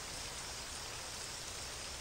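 Steady, faint rain falling: an even hiss with no separate drops or other sounds standing out.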